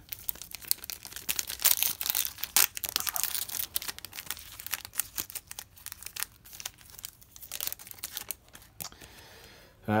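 Foil wrapper of a hockey card pack being handled and torn open by hand: a run of sharp, crisp crackles, loudest in the first few seconds, then softer rustling.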